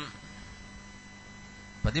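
Steady electrical hum through a microphone and sound system in a gap between a man's amplified speech. His voice stops at the start and comes back near the end.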